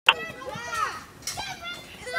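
Children's voices: high-pitched calls and chatter that rise and fall in pitch. A short sharp click sounds right at the very start.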